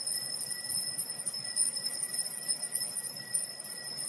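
Altar bells shaken in a continuous high jingling ring, marking the elevation of the host at the consecration of the Mass; the ringing fades out just after the end.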